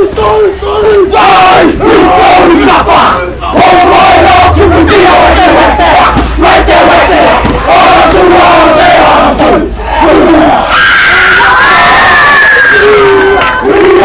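A group of teenage boys performing a haka: loud shouted chanting in unison, phrase after phrase, punctuated by sharp hits. About eleven seconds in, a higher drawn-out cry is held for a couple of seconds.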